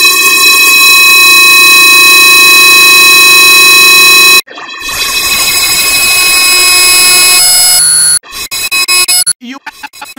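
Extremely loud, distorted electronic noise with a stack of sustained whining tones, cutting off dead about four and a half seconds in. A second loud distorted stretch runs until about eight seconds in. The audio then breaks into rapid, stuttering chopped fragments.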